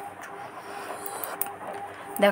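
Potato wedges and sliced onions frying in oil in a kadai, a steady sizzle, with a few sharp clicks of the spatula against the pan about a second in.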